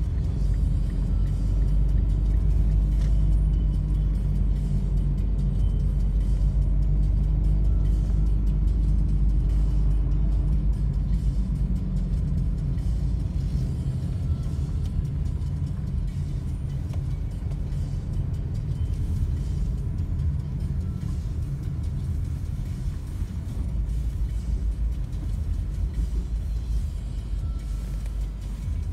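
Inside a moving car: a steady low rumble of engine and tyres on the road, easing off in the second half as the car slows to a stop.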